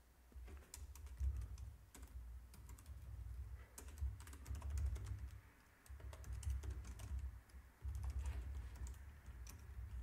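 Computer keyboard typing: quick runs of key clicks with short pauses between runs, and a dull low thudding under the keystrokes.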